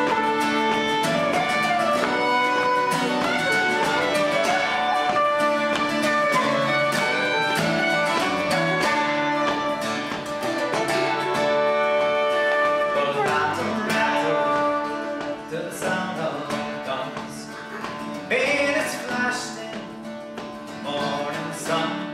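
Instrumental break of an Irish ballad played on wooden flute, fiddle, bouzouki and acoustic guitar, the flute and fiddle carrying the melody over strummed chords. About two-thirds of the way through, the music thins and gets quieter.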